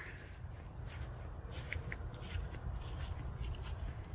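Low steady outdoor rumble with faint footsteps on grass and a couple of light ticks about halfway through.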